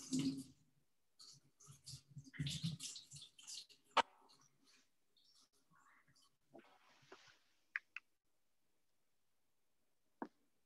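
Faint handling noises in a kitchen: soft rustling for the first few seconds, one sharp knock about four seconds in, and two light clicks near eight seconds.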